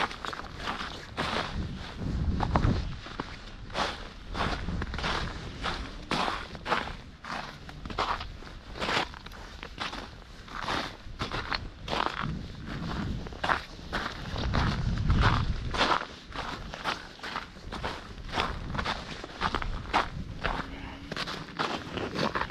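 Booted footsteps on a snowy, muddy path, at a steady pace of about two steps a second. A low rumble comes in twice, a couple of seconds in and again past the middle.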